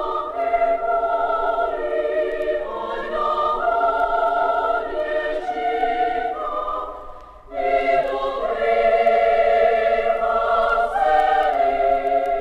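Children's choir singing held, sustained phrases, with a brief break about seven and a half seconds in before the voices come back.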